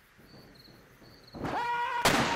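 A rock song drops out to a break of near silence with a few faint short high tones. About a second and a half in, a rising pitched note comes in and swells as the music resumes.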